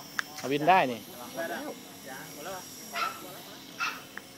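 A man speaking Thai in short phrases; no helicopter motor or rotor is running.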